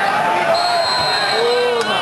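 Shouting voices of players and spectators at an outdoor football match. A steady, high-pitched whistle is held for about a second, starting half a second in, and the dull thud of a ball being kicked comes about a second in.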